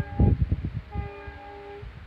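A horn sounding two held blasts, each a chord of several steady tones, over a low rumble. The first blast cuts off right at the start, and the second begins about a second in and lasts just under a second.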